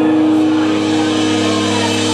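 Live rock band holding a sustained chord, with distorted electric guitar and bass notes ringing out steadily and no drum beat.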